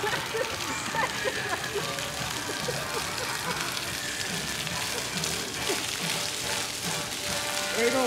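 Ground-level fountain jets spraying onto wet pavement, a steady hiss of falling water.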